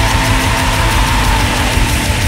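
Black metal music: a loud, dense wall of distorted guitar over fast, pounding drums, with a held high note running through it.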